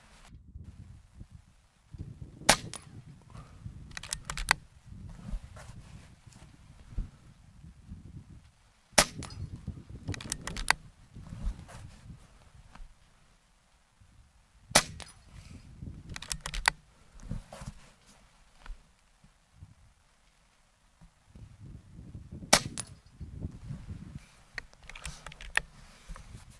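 Four shots from an Air Arms S510 XS Ultimate Sporter .25 regulated PCP air rifle, each a sharp crack, spaced about six to eight seconds apart. Each shot is followed a second or two later by a pair of quieter clicks as the side lever is cycled to load the next pellet. A low wind rumble on the microphone runs between the shots.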